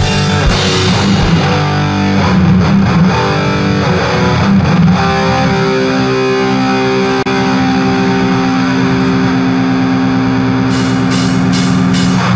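Raw death metal punk recording: distorted electric guitar chords, with long held notes ringing through the middle and sharp drum or cymbal hits coming back in near the end.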